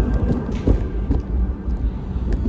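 Stroller rolling over a sidewalk: a steady low rumble from the wheels with a few knocks over bumps, carried straight into a camera mounted on the stroller's handlebar.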